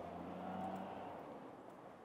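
A motor vehicle passing by out of sight: its engine sound swells in the first half-second and fades away by about a second and a half in.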